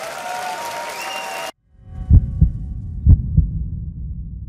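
Audience applause with whistles that cuts off abruptly about a second and a half in. Then an end-card sound of deep double thumps like a heartbeat, two pairs about a second apart, over a low hum.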